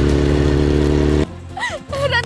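Motorcycle engine running at steady revs, cutting off suddenly a little over a second in.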